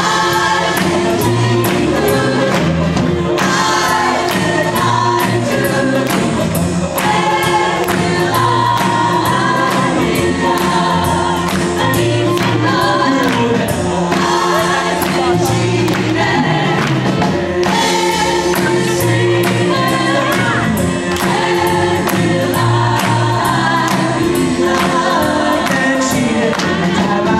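Group of women singing an oldie pop song in close harmony with live band backing, drums keeping a steady beat.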